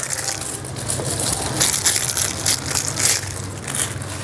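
Thin clear plastic bag crinkling and rustling, a dense irregular crackle throughout, as a plastic eyeglasses case is unwrapped by hand.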